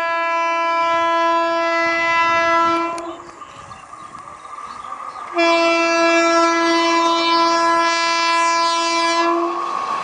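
Indian Railways WAP-4 electric locomotive's horn sounding two long, steady blasts, the first ending about three seconds in and the second starting about five and a half seconds in. Near the end the rushing noise of the train passing close by takes over.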